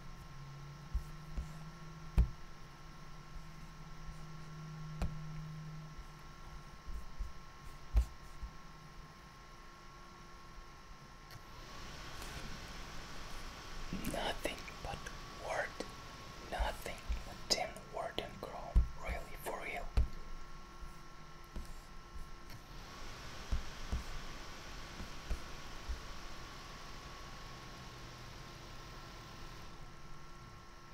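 Laptop GPU fans of an MSI Creator 15 OLED in silent mode kicking on with a rush of air about eleven seconds in, cutting off abruptly after about ten seconds, and starting again moments later: the random on-off cycling of the GPU fans even though the laptop is barely warm. Scattered light clicks throughout.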